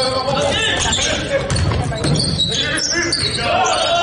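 Basketball dribbled on a hardwood gym floor during live play, the bounces echoing in the hall, with players' and spectators' voices calling out over it.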